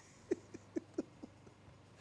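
A man chuckling softly: a string of short, breathy laughs, each falling in pitch, about four a second, dying away near the end.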